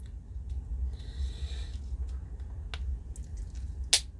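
Two halves of a small plastic toy shield being handled and pressed together: soft rubbing and a few light clicks, then one sharp click just before the end as the halves snap into place.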